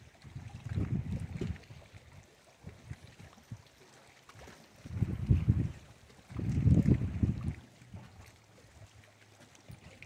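Wind buffeting the microphone in three uneven low rumbling gusts: about a second in, around five seconds in, and again from six to seven and a half seconds, with a faint outdoor hiss between them.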